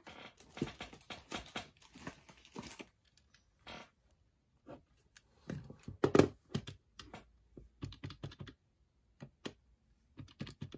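Plastic keys of a TRU RED BD-4530 desktop calculator being pressed by finger: irregular clicks and taps while sums are keyed in. There is denser handling noise in the first few seconds and one louder knock about six seconds in.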